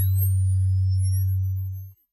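Synthesized logo-ident sound effect: a loud, steady deep hum with thin high tones rising and two lower tones gliding down over it, cutting off just before the end.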